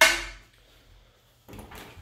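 Interior door swung open, giving a single sharp metallic clang that rings briefly and dies away within half a second.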